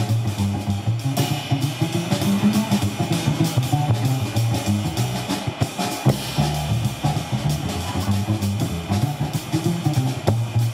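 Live jazz: an upright double bass plucked in a moving low line, with a drum kit keeping time on cymbals and drums.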